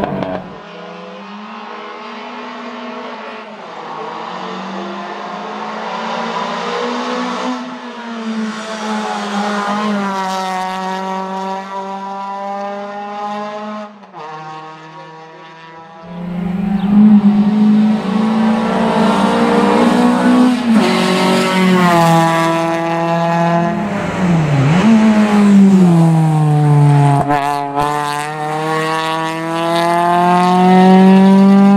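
Renault Clio race car engine running hard at high revs, its pitch climbing through each gear and dropping back at the shifts. It is quieter at first and loudest from about halfway, as the car comes close.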